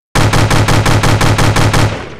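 Automatic rifle fire as a sound effect: a fast burst of about six or seven shots a second lasting nearly two seconds, then a fading echo.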